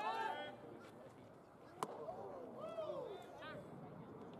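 A single sharp pop about two seconds in, a pitched baseball landing in the catcher's mitt. People call out at the start and again after the pop.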